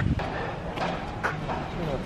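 Quiet, indistinct talking voices.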